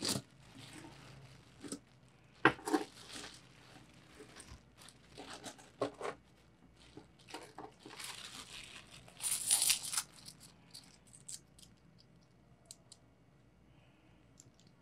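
A thin clear plastic bag crinkling and rustling as hands dig peso coins out of it, in irregular bursts, the loudest about nine to ten seconds in. In the last few seconds, small light clicks of coins being stacked in the hand.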